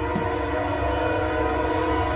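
Train horn blowing one long, steady chord of several notes.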